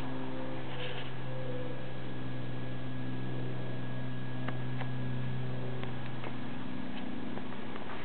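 Steady low electrical hum, with a few faint clicks in the second half.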